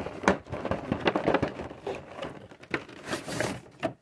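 Cardboard-and-plastic window box of an action figure being handled and opened: rustling, crinkling packaging with irregular clicks and taps, busiest a little after three seconds in.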